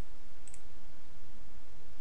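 A single faint computer-mouse click about half a second in, over a steady low hiss.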